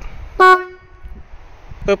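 A 12 V single-trumpet stainless marine horn gives two short toots, one about half a second in and another near the end. It is a steady tone at about F sharp that rings briefly after each toot.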